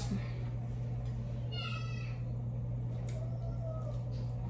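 A steady low hum, with one short high-pitched cry lasting about half a second, a second and a half in.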